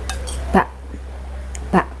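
A metal spoon clinking and scraping against a ceramic bowl during eating, a few short sharp strokes early on.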